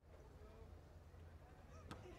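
Near silence: faint background ambience, with one sharp tap near the end.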